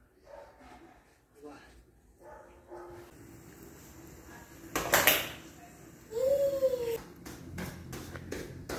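A toddler's play sounds: faint vocal sounds, then a loud clatter of small household objects about five seconds in, a short voice call that rises and falls in pitch, and light knocks near the end.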